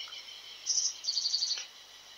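Small bird chirping faintly and high: one short chirp, then a quick trill of rapid chirps about a second in.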